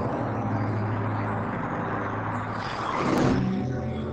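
Electronic title-sequence soundtrack: a low steady drone of held tones, with a whoosh that swells and peaks about three seconds in.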